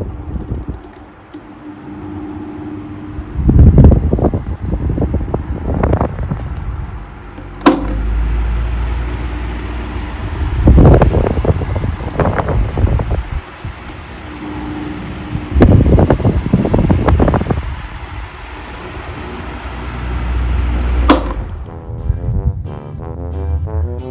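Cosmos electric desk fan running steadily, its airflow buffeting the microphone in strong, irregular low swells. A sharp click comes about eight seconds in and another near the end.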